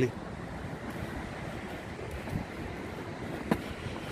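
Steady low outdoor rumble with no clear single source, and one short sharp click about three and a half seconds in.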